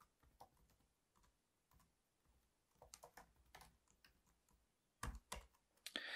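Faint typing on a computer keyboard: scattered single keystrokes, a quick run of taps in the middle, and a few louder keystrokes near the end.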